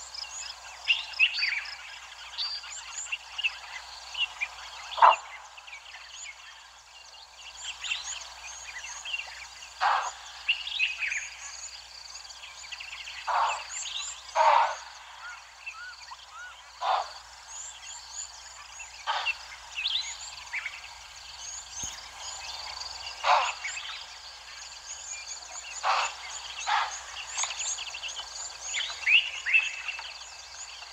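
Wild birds chirping and calling in a busy chorus, with a louder short, falling call every few seconds.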